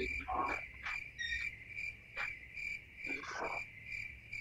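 A steady, high-pitched trill like a cricket's song, pulsing several times a second, with a few faint breathy sounds under it.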